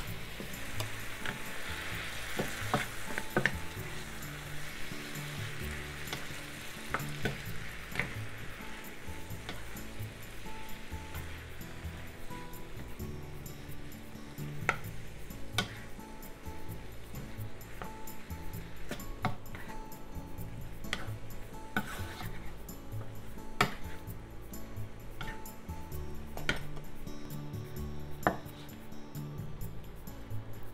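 Broccoli and shimeji mushrooms sizzling in a stainless steel frying pan, stirred and tossed with a wooden spatula, with scattered clicks of the spatula against the pan. The sizzle is strongest in the first few seconds, just after the soy sauce, mirin and butter have gone into the hot pan, and then thins out.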